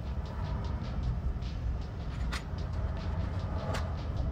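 Steady low rumble of a vehicle on the road, heard through a phone's microphone, with two short clicks, one a little past halfway and one near the end.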